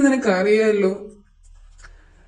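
Speech: a voice narrating for about a second, then a short pause.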